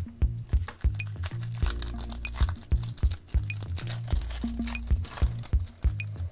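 Foil wrapper of a 2019 Panini Phoenix football card pack crinkling and tearing as it is opened by hand, from about a second and a half in until near the end, over background music with a steady beat.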